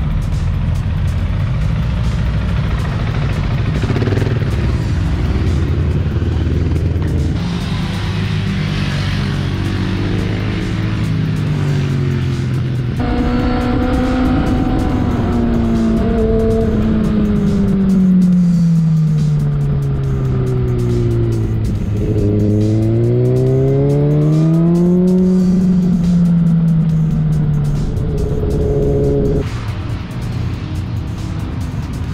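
Background music mixed with motorcycle engine sound. In the second half, a sport bike's engine note falls slowly, rises again and falls as it is ridden around a circuit.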